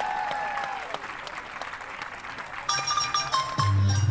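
Audience applause with a long drawn-out call rising and falling over it as a marimba piece ends. About two and a half seconds in, the next marimba piece starts over the PA, with a bass line coming in shortly before the end.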